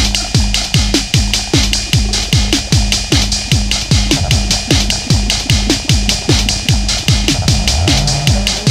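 Hardware electronic jam in a dub-techno style: an Uno Drum machine and a Behringer Crave analog synth play a steady beat. Kick-drum hits drop sharply in pitch under a quick run of hi-hat ticks, over a held low synth drone.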